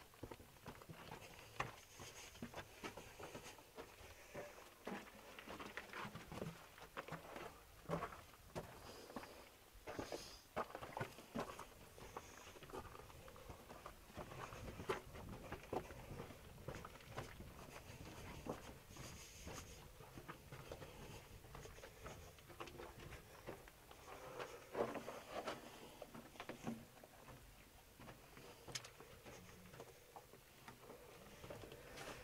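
Faint, irregular scuffing, scraping and footsteps of people working their way through a narrow dug tunnel, with small knocks now and then.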